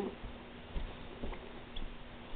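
Faint handling noises: a few soft, scattered taps and rustles over a steady low hum.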